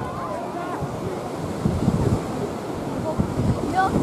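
Wind buffeting the microphone in an uneven low rumble that grows stronger in the second half, with faint distant shouts of children.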